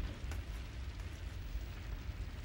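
A low, steady rumble with a faint hiss and a few faint ticks: background ambience in an anime soundtrack.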